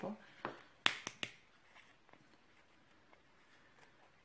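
Small plastic jar of craft mini beads being opened by hand: about four sharp plastic clicks within the first second and a half.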